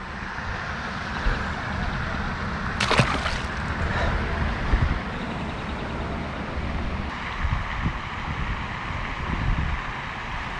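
Wind buffeting the microphone in a steady, gusting rush with a low rumble, and one short sharp sound about three seconds in.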